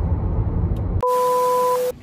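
Car cabin road rumble while driving, which stops abruptly about a second in. A steady electronic beep of two pure tones over a burst of hiss replaces it, lasting nearly a second before it cuts off: an edited-in transition sound effect.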